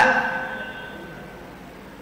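The echo of a man's chanted voice dying away, leaving one high ringing tone that fades over about a second and a half into faint background hiss.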